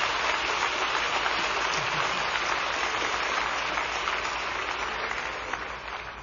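Congregation applauding, a dense, steady clapping that starts to fade near the end.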